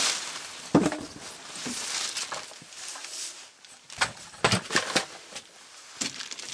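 Debris being handled: rustling with sharp knocks of wooden sticks and plastic sheeting. One knock comes about a second in, then a quick run of four knocks near the fourth and fifth seconds.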